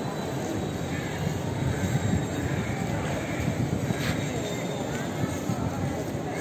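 Outdoor crowd ambience: a steady low rumble with faint voices of people milling about.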